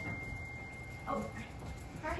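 A faint, steady high-pitched tone that fades out about one and a half seconds in, with a brief spoken 'oh' about a second in.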